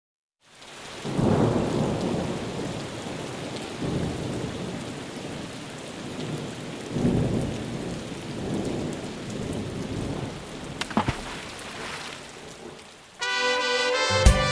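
Recorded rain and thunder opening the song: steady rain with several rolls of thunder and a few sharp cracks about eleven seconds in. Near the end the band comes in with brass.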